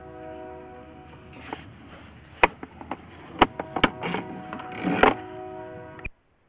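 A sewer inspection camera head and its push cable clicking and scraping against the pipe as it is fed back down the line: a few sharp knocks and short scrapes over a steady hum.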